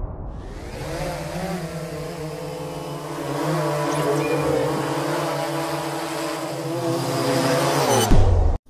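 Quadcopter drone motors and propellers humming steadily, the pitch wavering slightly, growing a little louder partway through.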